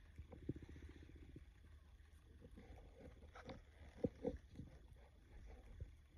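Faint handling noise: soft knocks and rustles as a plastic toy guitar and its fabric strap are moved about, the loudest a pair of quick knocks about four seconds in, over a low steady hum.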